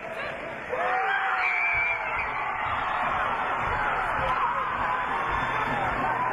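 Arena crowd shouting and cheering, starting suddenly about a second in with a few long held yells over a steady babble of many voices, echoing in a large hall.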